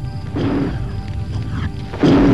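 Film score music with a rushing whoosh of a campfire flaring up into tall flames, surging about a third of a second in over a low rumble.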